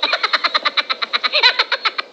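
An electronic-sounding sound effect edited into the video: a fast, even run of short pulses, about ten a second, over a steady tone.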